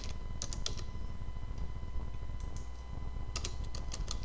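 Typing on a computer keyboard: a quick cluster of keystrokes about half a second in, a few scattered ones around the middle, and a fast run of keys near the end.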